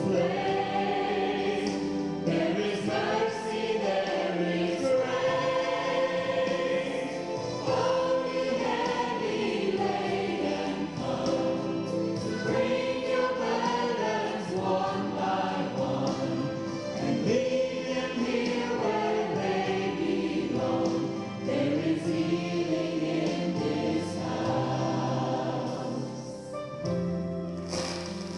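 Gospel choir singing with music, held and gliding sung notes running without a break.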